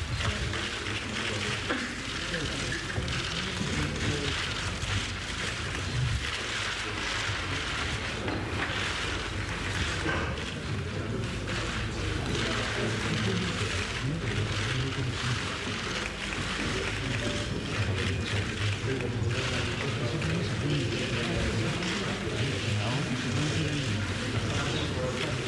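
Low murmur of voices in a large room, with many small clicks scattered through it.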